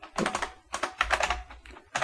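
Typing on a computer keyboard: a run of quick key clicks in small groups, thinning out near the end.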